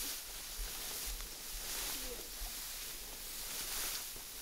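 Wind across an open wheat field, with an irregular low rumble of wind buffeting the microphone under a steady hiss.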